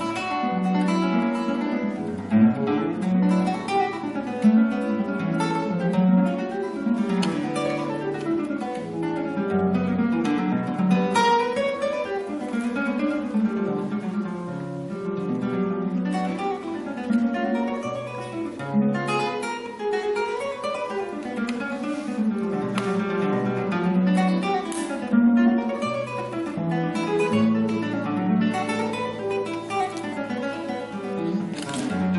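Classical nylon-string guitar played solo, fingerpicked, in a continuous flow of plucked notes over lower bass notes.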